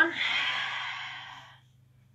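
A woman's long exhale out through the mouth, a breathy sigh that fades away over about a second and a half, marking the out-breath of a yoga breathing exercise.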